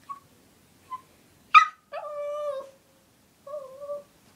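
A talkative dog vocalizing in reply: two short squeaks, then a sharp yip about a second and a half in, followed by a drawn-out whining howl and a shorter wavering whine near the end.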